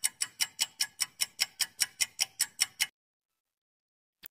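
Countdown-timer ticking sound effect, a clock-like tick about five times a second, which stops about three seconds in.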